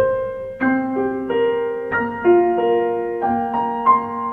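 Solo piano accompaniment with no vocal line, playing a gentle melody over broken chords, a new note or chord sounding about two to three times a second.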